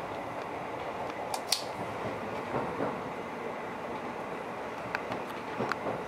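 Steady running noise of a train heard from inside the passenger carriage, with a sharp click about a second and a half in and a few lighter clicks near the end.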